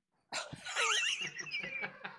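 High-pitched laughter starting about a third of a second in, its pitch sliding up and down.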